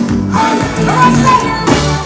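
Live band music: a male lead vocalist singing into a handheld microphone over electric guitar, drums and keyboards, played loud through the concert sound system.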